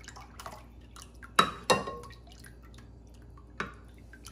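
Metal ladle working a thick chocolate-milk mixture in a glass bowl, the liquid pouring and dripping back off the ladle. Two sharp clinks of the ladle against the glass about a second and a half in, and a lighter one near the end.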